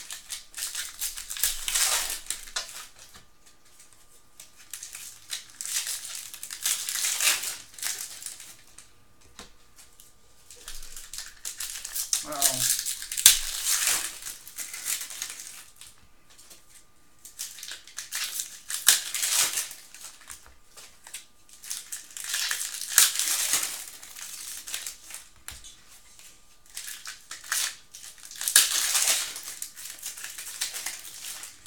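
Crinkling and rustling from trading card packs and cards being handled, in bursts of a second or two every few seconds.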